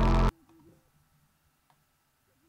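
Hip-hop track playing back with a heavy sustained bass note, cutting off abruptly a moment in; then near silence with a faint low hum and a few soft clicks.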